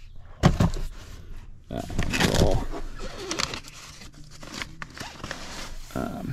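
Handling noise: rustling and scuffing as gear in the cab is moved about, with a few sharp clicks and knocks.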